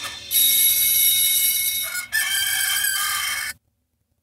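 A rooster crowing: one long crow in two parts, with a brief break about two seconds in, cut off sharply near the end.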